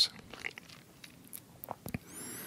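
A quiet pause with faint room noise and a scattering of small, brief clicks and ticks.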